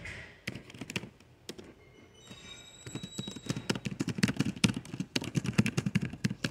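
Rapid, irregular clicks and taps close to the microphone, sparse at first and then denser and louder from about halfway through. A faint high steady tone sounds for about a second a little after two seconds in.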